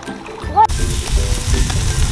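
Marinated carne asada sizzling on a barbecue grill grate, a steady hiss that starts suddenly a third of the way in.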